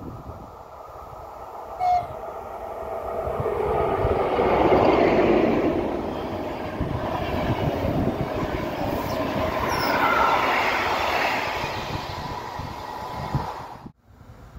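Electric locomotive hauling a train of passenger coaches passing at speed, with a short horn toot about two seconds in. The rush and wheel rumble swell as the locomotive goes by about five seconds in, then the coaches roll past with a steady tone. The sound cuts off sharply at the end.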